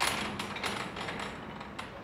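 A mechanism clattering: it starts abruptly with a rattle, then gives a run of irregular sharp clicks and creaks.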